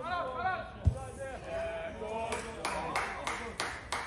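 Men's voices talking and calling out, with a single dull thump about a second in, then a quick run of about six sharp clicks or knocks through the second half.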